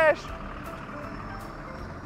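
City bus driving away from the stop, a steady engine and road noise.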